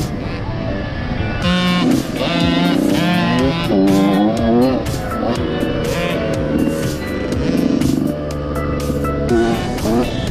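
A song with a singing voice and a drum beat, laid over the steady noise of dirt bike engines running on a motocross track.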